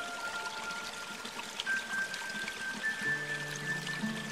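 Slow, calm instrumental music of long-held notes, with a steady trickling water sound underneath.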